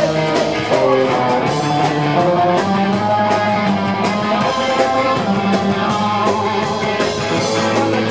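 Live ska band playing an instrumental passage with electric guitars, upright bass and drums over a steady beat.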